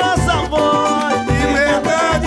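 Live pagode samba group playing: tantã and rebolo hand drums beating a steady low pulse under pandeiro jingles and strummed cavaquinho, with voices singing.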